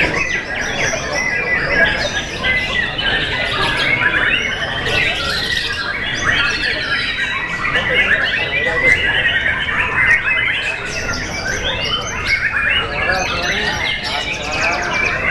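Many white-rumped shamas (murai batu) singing at once in a contest, a dense, continuous tangle of rapid chirps, whistles and harsh calls, with voices murmuring underneath.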